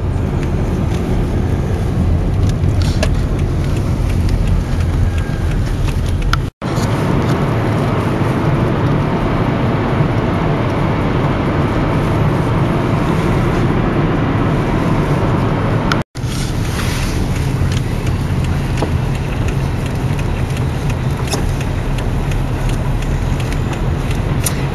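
Steady rumble of road and engine noise heard from inside a moving car. It breaks off for an instant twice, about six and a half and sixteen seconds in.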